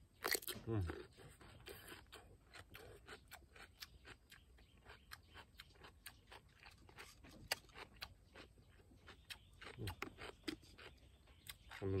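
A crisp cucumber bitten into with one sharp crunch just after the start, then chewed, with many small irregular crunches. A short "mm" hum from the eater comes about a second in.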